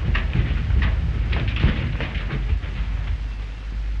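An old automobile running and clattering as it is driven up a staircase, with irregular knocks over a steady low hum.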